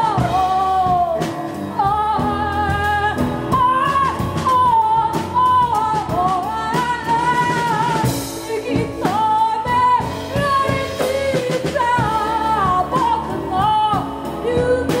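Live band music: a woman sings a gliding melody over upright double bass, drum kit and piano, with steady drum strikes and a cymbal wash about eight seconds in.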